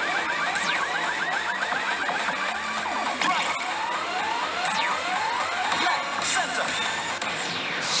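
Pachislot machine's electronic music and effect sounds over the din of a pachinko hall, full of short rising chirps, with a loud burst near the end.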